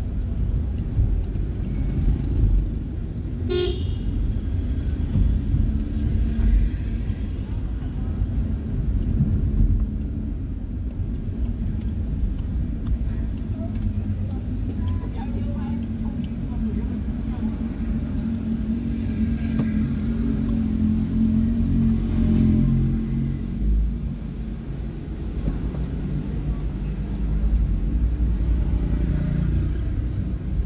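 Steady engine and road rumble heard from inside a car's cabin while driving through city traffic. A vehicle horn beeps briefly about three and a half seconds in.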